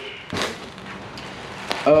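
Bubble wrap around a carbon fiber spoiler rustles briefly as it is handled, over a faint steady hiss. A single sharp click comes near the end.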